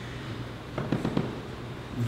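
Quiet room tone with a low hum, broken by a quick cluster of short clicks and crackles about a second in.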